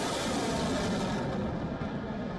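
Rocket motor of a missile launching from a warship's deck: a steady rushing noise that peaks about half a second in and eases slightly near the end.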